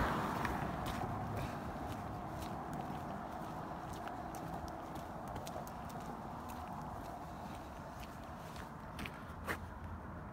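Faint outdoor road noise that slowly dies away, with scattered light clicks and taps and one sharper tick near the end.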